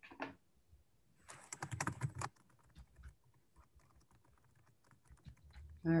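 Typing on a computer keyboard: a quick run of keystrokes about a second in, then scattered lighter key clicks.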